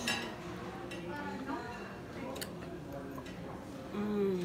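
Restaurant dining-room background: indistinct voices, with a few sharp clicks of cutlery and dishes.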